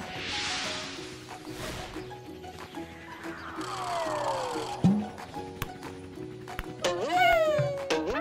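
Cartoon background music with sound effects: a whoosh at the start, a tone sliding steeply downward as the soccer ball drops, and a sharp knock just before the middle as it lands. Near the end comes a short, high, squeaky cartoon-character voice.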